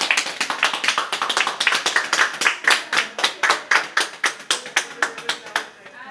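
A small group of hospital staff clapping, a steady round of applause that stops shortly before the end.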